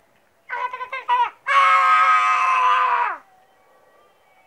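A person's high-pitched yell: a few short cries, then one long loud cry held for about a second and a half that drops in pitch as it trails off.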